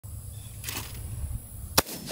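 A single shotgun shot fired at a clay target near the end, a sharp, short crack. Wind rumbles on the microphone before it.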